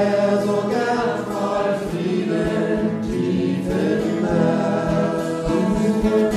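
Gospel song: a choir singing in sustained harmony over the band's accompaniment, with a steady low beat underneath.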